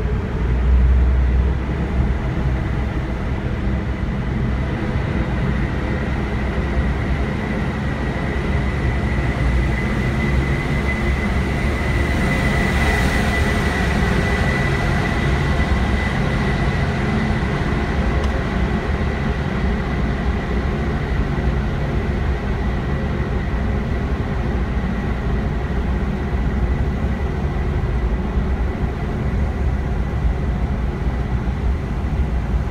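Steady road and engine noise from inside a car driving through a road tunnel, with a low rumble and a brief swell about a second in. A thin high whine rises and fades around the middle.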